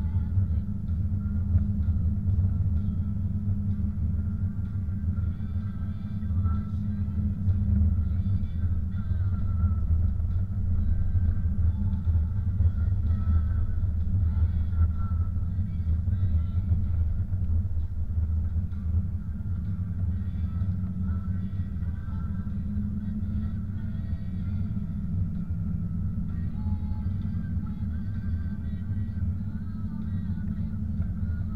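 Steady low rumble of a car driving on a snow-covered road, engine and tyre noise heard from inside the cabin.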